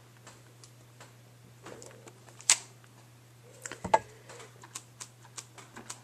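Light, scattered tapping and clicking of a dye ink pad being tapped onto a stamp and the stamp being handled and pressed, with one sharp click about two and a half seconds in and a quick cluster of knocks around four seconds.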